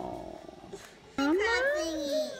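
A young child's wordless vocal sounds: a falling sound fading out at the start, then about a second in a long call that rises in pitch and holds.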